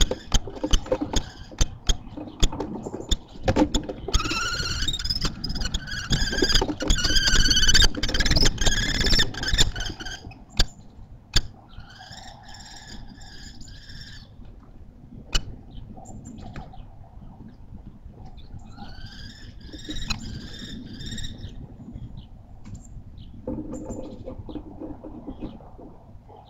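Common kestrels calling at the nest box during a prey exchange: a rapid trilling series of shrill calls lasting about six seconds, then two shorter runs later. Before the calls, sharp taps and knocks of the birds moving on the wooden box.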